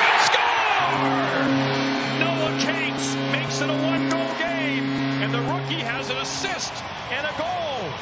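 Hockey arena crowd cheering loudly as a home goal is scored, then the goal horn sounding in long, steady blasts from about a second in until near the end, over goal music.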